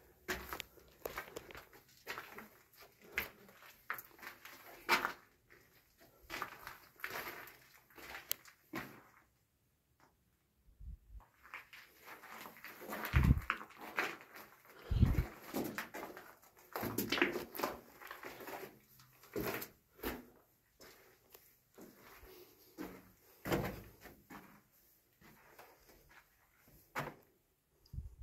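Footsteps crunching and scuffing on the loose rock and gravel floor of a mine tunnel, in an irregular walking rhythm, with a couple of heavier thumps about halfway through.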